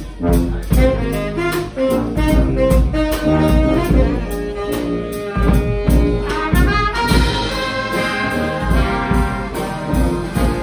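A Guggenmusik-style Fasnacht brass band playing live: saxophones, trumpets, trombones and sousaphone over a drum kit with bass drum and cymbals, keeping a steady beat of about two drum hits a second. About seven seconds in, the horns rise into a higher, fuller passage.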